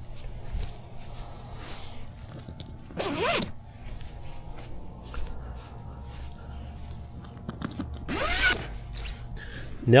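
A long zipper being unzipped along the seam of a folding fabric solar blanket, splitting it into two separate panels. It comes in several rasping pulls, the loudest about three seconds in and again near eight seconds, with quieter zipping between them.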